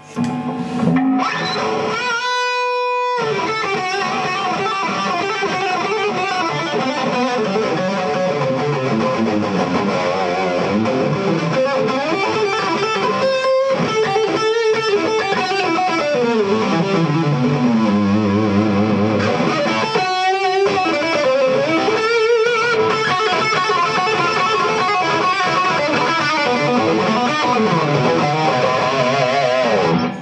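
Gibson Les Paul Standard electric guitar played through the lead channel of an AMT SS-20 three-channel tube preamp into an Egnater Renegade power amp: a distorted solo of sustained single-note lines with vibrato and string bends, with a few short breaks between phrases.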